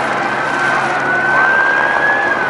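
Street full of vehicles: a long, steady high-pitched squeal that creeps slightly upward in pitch, with shorter squeals sliding up and down around it, over a continuous bed of engine and street noise.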